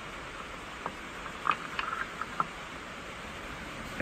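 A few light metallic clicks, about one to two and a half seconds in, as a Chevy 350 Vortec distributor is worked down into the block until its gear meshes with the oil pump drive and it seats flush. Under them is a steady hiss of rain on a tin roof.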